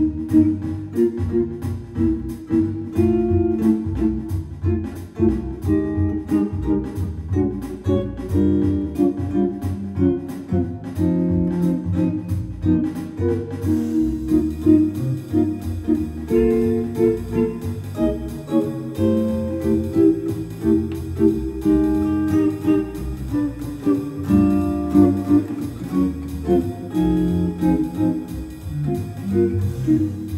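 Guild T-50 Slim archtop guitar comping jazz chords in a swing rhythm, with a few extra notes added on the top string. A steady ticking backing rhythm from a practice app plays along for about the first half.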